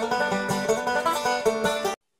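Banjo being picked: a quick, busy run of plucked notes in a bluegrass style that stops abruptly at the end.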